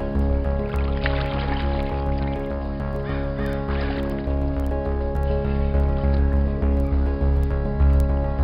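Background music with a steady, repeating bass beat and sustained tones.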